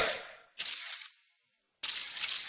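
Camera shutter firing twice: two short, sharp bursts of noise, the first about half a second in and the second near the end.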